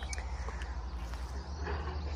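Outdoor backyard ambience: birds chirping faintly over a steady low rumble.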